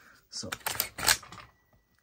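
An AR-15 rifle's action being worked by hand: a quick run of sharp metallic clicks and clacks, the loudest about a second in, as the hammer is cocked and the trigger readied for a dry-fire reset demonstration.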